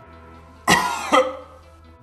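A young woman coughs twice in quick succession, starting about two-thirds of a second in. The coughs are gagging coughs of disgust at something she has just read. Soft background music runs underneath.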